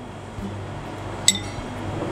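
A metal spoon clinks once against a ceramic bowl about a second in, as blanched broccoli is spooned into a salad bowl, over a low steady hum.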